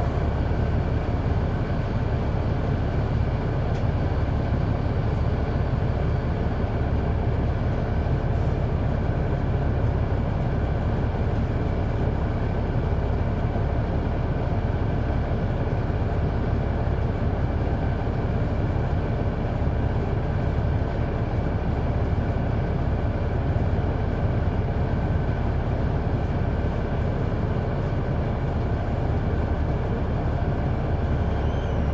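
Caterpillar C9 ACERT diesel engine of a 2004 Neoplan AN459 articulated transit bus, heard from on board, running with a steady, even drone.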